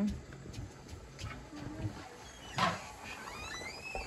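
A metal stockpot lid lifted off a water-bath canner on a propane camp stove, with one brief clatter about two and a half seconds in over the burner's low rumble. The water inside is heating but not yet boiling. Faint high rising chirps follow.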